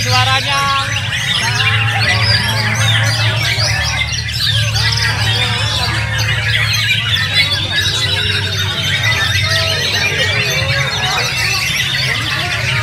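White-rumped shama (murai batu) singing in its contest cage, its song woven into a dense, unbroken chorus of many other caged songbirds, over a steady low hum.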